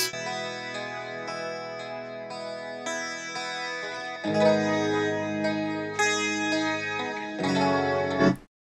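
Recorded electric guitar played back from a mix session: its direct-input (DI) track and miked amp track sounding together, playing sustained, ringing notes. A fuller, lower layer joins about four seconds in.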